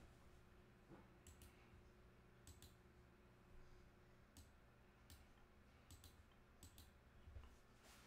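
Near silence: faint room tone with about ten small, scattered clicks.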